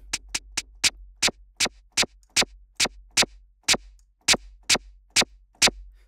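Xfer Serum 'FX - Trip Scratch' patch, a scratch-like noise sample, played as a run of short, sharp bursts about two to three a second, unevenly spaced. The sound is completely dry because the patch's reverb has just been switched off.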